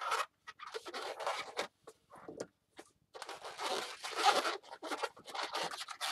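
Inflated latex modelling balloons squeaking and rubbing against each other and the hands as they are twisted into loop twists. The sound comes in scratchy bursts with short pauses, busiest in the second half.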